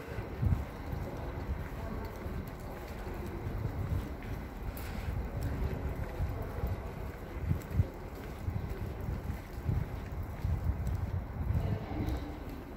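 Wind buffeting the phone's microphone in irregular low gusts, over faint background noise.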